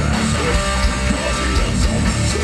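Live rock band playing: electric guitars strumming over bass guitar and a drum kit, at a steady, loud level.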